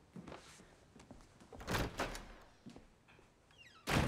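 A door banging shut near the end, one sharp thud, after a few softer knocks and movement sounds.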